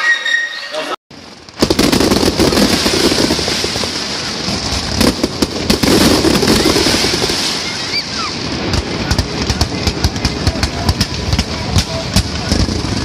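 Children's voices at play for about a second, then, after a brief break, fireworks crackling and popping in rapid clusters over crowd noise. The pops get thicker toward the end.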